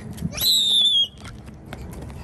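A child's short, very high-pitched squeal, lasting under a second and dipping slightly in pitch as it ends.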